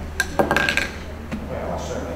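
A quick cluster of sharp clicks and clinks, lasting under a second, over a steady low hum of the room.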